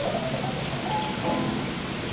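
Steady rushing hiss of circulating aquarium water and equipment in the coral tanks, with faint background music over it.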